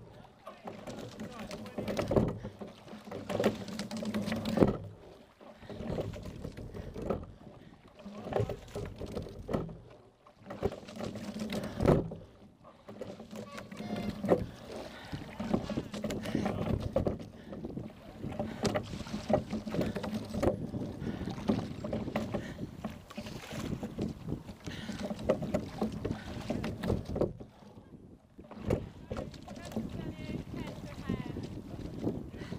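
Sculling boat rowed on the water: oars knocking in the rigger gates with each stroke over the wash of water along the hull. After about twelve seconds the strokes stop and the boat runs on with a steadier wash.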